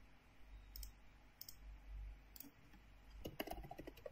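Computer keyboard and mouse clicks: single sharp clicks spaced under a second apart, then a quick run of keystrokes near the end.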